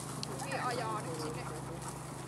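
A small flock of sheep trotting over straw-covered ground, their hooves making quick light steps, with a short wavering call about half a second in.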